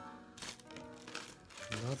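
Light crinkling and clicking of a plastic lighter and tools being handled on cardboard, over background music with held notes; a man's voice comes in near the end.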